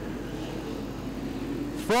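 AMCA Nationals speedway sedans racing on a dirt oval, their engines a steady drone with no single car standing out.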